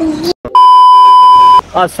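A bleep sound effect: one loud, steady beep at a single pitch, starting about half a second in and lasting about a second.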